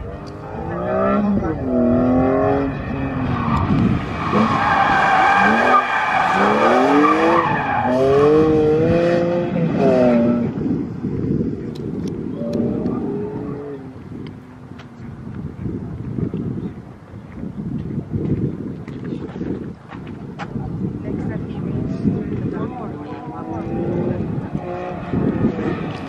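BMW E46 M3's straight-six, through its new Rogue Engineering exhaust, revving up and falling back again and again as the car is driven hard around an autocross course, with tire squeal from about 4 to 8 seconds in. After about ten seconds the engine is quieter and lower.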